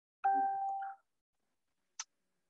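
A single chime-like bell tone, about three-quarters of a second long and fading, beginning a quarter second in, with a short click near the end.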